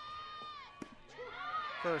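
A long high-pitched shouted call from a voice at the ballpark as the softball pitch is thrown, then a single sharp pop just under a second in as the fastball lands in the catcher's mitt for a called strike.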